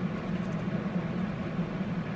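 Steady low hum under an even hiss, unchanging throughout: continuous room background noise.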